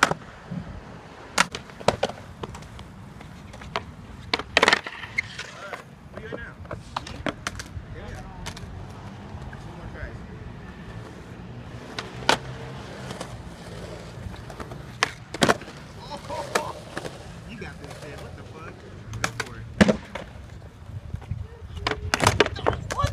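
Skateboard wheels rolling on concrete, broken by repeated sharp cracks of the tail popping and the board slapping down as flatground flip tricks are tried.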